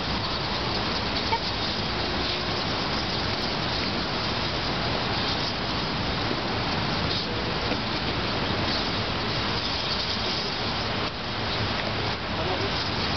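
Large open wood fires burning in braziers, a steady rushing noise with a few faint crackles.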